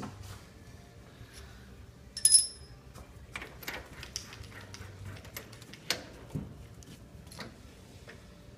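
Metal tooling being handled at a stopped metal lathe: scattered light clicks and knocks, with one bright, ringing metallic clink about two seconds in.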